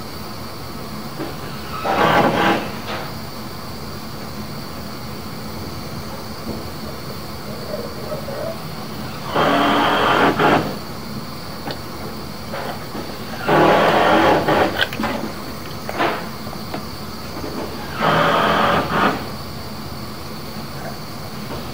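Sewer inspection camera's push cable being pulled back out of a cast iron drain line in short pulls: four scraping rushes of about a second each, over a steady background hiss.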